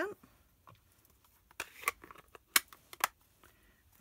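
A few short, light clicks and taps of small craft items being handled and set down on a desk, after a quiet first second or so; the sharpest tap comes about two and a half seconds in.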